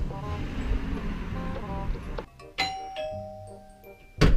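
Two-tone doorbell chime, a higher 'ding' then a lower 'dong', sounding a little over halfway through and ringing on as it fades, over background music.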